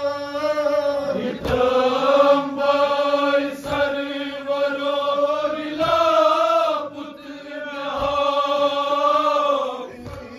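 Men chanting a nauha, a Shia mourning elegy, in long unison phrases behind a lead voice on a microphone. A short thump falls in the gap between phrases about every two seconds, in time with the group's chest-beating (matam).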